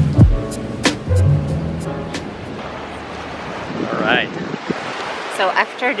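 Background music with a beat that ends about a second and a half in, then the steady rush of sea surf and wind on the microphone, with a brief voice and a few words near the end.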